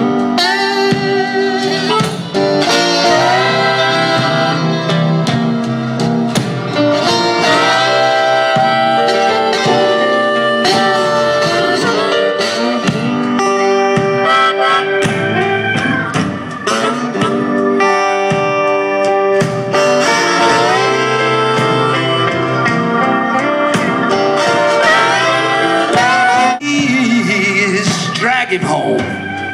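Slow blues instrumental break: a harmonica plays a solo of bent, sliding notes over acoustic guitar accompaniment.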